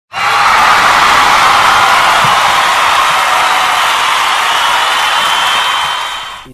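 Loud, steady crowd-like roar of cheering and screaming, used as an intro sound effect. It starts abruptly and fades out at the end.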